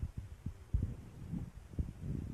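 Muffled low thumps and knocks of handling noise, a few of them sharper, the strongest about three-quarters of a second in and again near the end.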